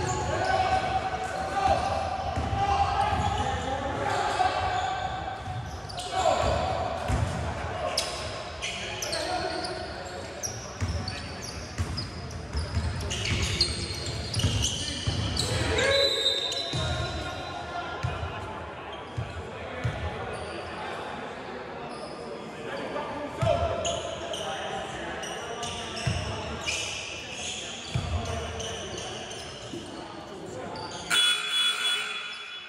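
Sounds of a basketball game on a hardwood gym floor: a ball bouncing in irregular strokes, with players' voices and shouts echoing in a large hall.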